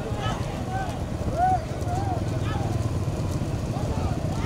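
Many motorcycle engines running together in a steady low rumble behind racing bullock carts. Short shouts rise and fall over it, the loudest about one and a half seconds in.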